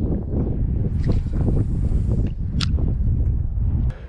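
Wind buffeting the microphone as a steady low rumble, with a rushing hiss from about one to two seconds in and a few light clicks, the clearest about two and a half seconds in.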